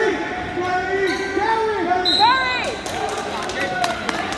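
Several voices shouting and calling out in long, rising and falling calls in an echoing school gym, with a short steady high tone about two seconds in.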